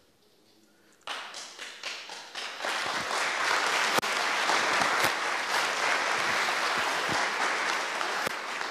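After about a second of quiet room tone, a few scattered hand claps start. Within a couple of seconds they build into full, steady audience applause.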